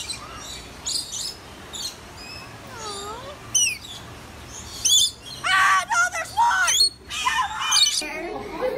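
Short high chirps and a few falling whistled calls from a rainbow lorikeet perched on a hand, then louder, wavering high-pitched squeals in the last three seconds.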